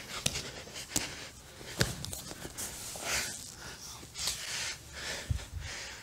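Grapplers breathing, with gi fabric rustling and scattered soft knocks of bodies shifting on the mat during a pressure-passing exchange.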